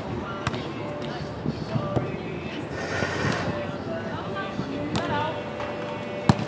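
A volleyball struck by players' hands and forearms during a beach volleyball rally: a few sharp slaps on the ball, about half a second in, around two seconds in, and again about a second before the end.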